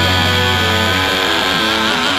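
Rock instrumental passage led by a distorted electric guitar over bass. A low held note stops about halfway through, and a high note wavers near the end.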